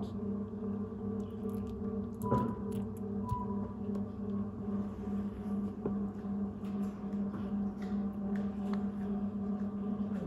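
A steady low electrical or machine hum in the processing room, with a few faint clicks and two short high beeps about two and three seconds in.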